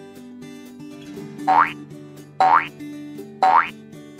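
Three short cartoon 'boing' sound effects about a second apart, each a quick upward sweep in pitch, counting down to a number shown on screen. Soft background music plays underneath.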